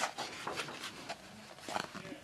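A colouring-book page being turned by hand, the paper rustling and brushing against the facing page. The loudest rustle comes at the start as the page swings over, with smaller rustles after it and another cluster near the end as the page is smoothed flat.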